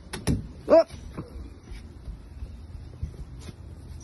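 A thrown toy basketball landing with two quick knocks right at the start, followed by a person's short 'Oh' reacting to the shot.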